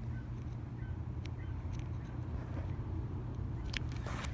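Steady low outdoor rumble, with a couple of short clicks from a multimeter test probe handled in a solar panel's cable connector, one about a second in and a sharper one near the end.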